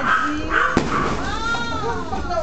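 Excited raised voices, with a single sharp firecracker bang about three quarters of a second in, then a high, drawn-out cry that rises and falls in pitch.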